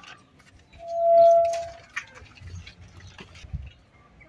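A gate hinge squeals once for about a second, swelling and fading as the gate swings. A few light metallic clicks follow.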